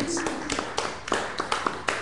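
Scattered clapping from a small audience, irregular sharp claps with a little voice near the start.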